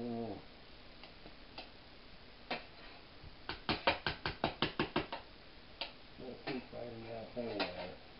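A spoon clicking against a dish in quick succession, about a dozen sharp taps over a second and a half, as cheese filling is knocked off it onto the lasagna, with a few single clicks before and after.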